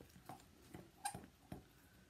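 Faint, irregular ticks and scrapes of a metal fork against a glass mixing bowl, about five in two seconds, as it stirs a dry, crumbly mix of cornstarch and hair conditioner.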